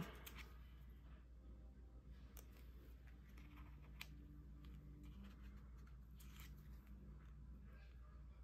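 Near silence: room tone with a faint low hum, broken by a few light clicks and soft rustles of paper pieces being pressed down by hand on a card.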